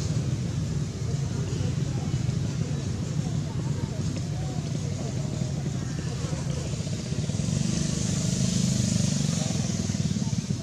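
Steady low motor rumble with faint voices in the background. It grows louder from about three-quarters of the way in.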